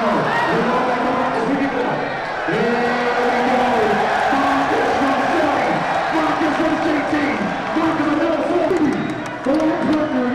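Gym crowd cheering and shouting, with a basketball being dribbled on the court.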